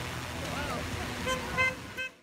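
Two short horn toots near the end, over crowd chatter and cheering voices from spectators at the roadside.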